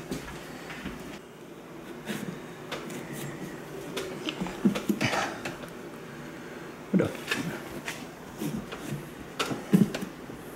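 Kitchen knife stabbing and sawing into a pumpkin's rind: scattered knocks and crunches at irregular intervals, with the sharpest about five, seven and nearly ten seconds in.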